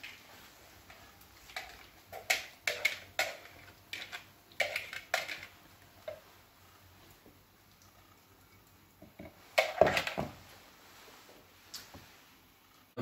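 A metal kitchen utensil clinking and scraping against a mixing bowl as the egg and potato mixture is scraped out into a frying pan. The sound comes as a run of short knocks and scrapes, with a louder cluster of knocks near the end.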